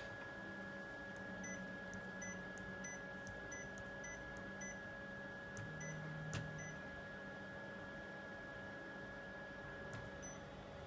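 Kyocera 5551ci copier's touch panel giving a short beep with each key press as a word is typed on its on-screen keyboard: about a dozen beeps at an uneven typing pace over the first seven seconds, with a single click a little after six seconds. A faint steady hum runs underneath.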